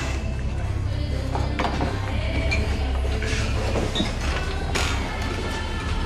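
Low, sustained background score under quiet bar-room ambience, with a couple of faint knocks.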